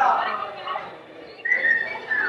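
A person whistling a short held note about a second and a half in, over the chatter of a milling crowd, with a loud burst of voices right at the start.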